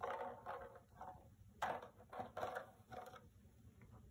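Plastic tomato container knocked about and tipped over on a rug by a cat pawing at it for treats: a string of about seven short plastic knocks and rattles, the loudest a little before halfway.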